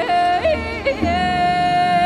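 Woman singing in a traditional Korean style, accompanied by haegeum (two-string fiddle) and gayageum: a long held note with wavering vibrato, broken by quick flips and jumps in pitch about half a second to a second in, then held again.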